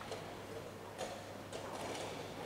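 Sharp clicks of chess pieces and clock buttons being struck at other boards, one about a second in and fainter ones near the end, over a steady low hum.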